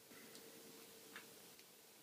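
Near silence: room tone with a faint steady hum and two or three faint small clicks.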